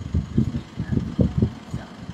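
A run of low, muffled thumps, about seven in two seconds at an uneven pace.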